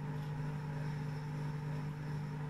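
Steady low machine hum with a few even overtones, unchanging throughout, as from a motor or appliance running.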